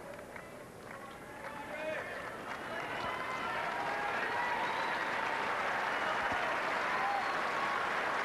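Tennis crowd applauding and cheering for one player, swelling from about two seconds in and then holding steady, with individual fans' calls rising over it.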